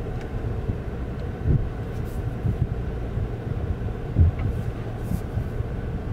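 Low, steady rumble inside the cabin of a hybrid Volvo V60 rolling slowly, with two short low thumps about a second and a half in and again a little past four seconds.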